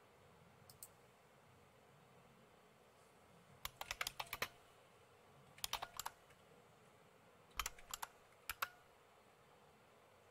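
Computer keyboard being typed on, faint: a couple of keystrokes about a second in, then several quick runs of keystrokes between about four and nine seconds.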